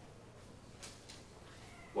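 Quiet room tone with two faint, brief noises about a second in, then a man's voice starting right at the end.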